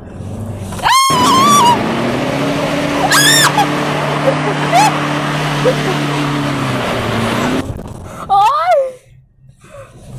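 Ford Ranger 2.2 pickup driven hard across loose dirt: a steady engine drone under a loud rush of tyres and gravel that stops suddenly near the end. Two high shrieks from the occupants come about a second in and again around three seconds, and a shouted "oi" follows near the end.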